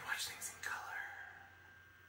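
A man's breathy, whispered gasp of amazement, without voice, fading out about a second in, followed by quiet room tone.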